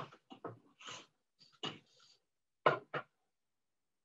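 Hands working at a wooden four-shaft floor loom: short rustles and scrapes of the shuttle and yarn, then two sharp wooden knocks about three seconds in, a fraction of a second apart.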